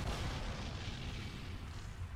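Sound effect of a low rumbling blast or heavy impact, loudest at the start and slowly dying away.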